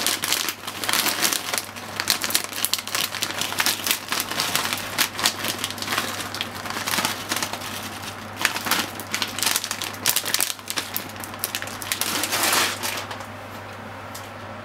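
Plastic bag of corn kernels crinkling as it is tipped and shaken out over a dish, with irregular crackles that stop about a second before the end.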